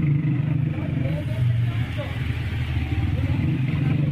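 An engine running steadily, a low hum that shifts slightly in pitch.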